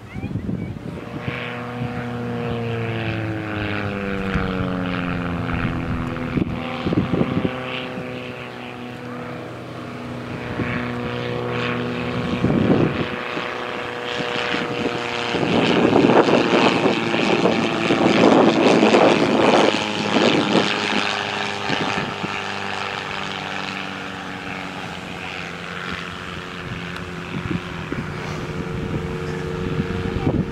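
Propeller engine of a Silence Twister aerobatic plane flying a display. The engine note falls in pitch as the plane passes in the first few seconds, then grows loudest during a close pass in the middle.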